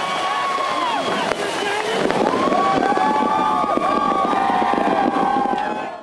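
Stage pyrotechnic spark fountains crackling, with long drawn-out calling voices over them. The sound fades out at the very end.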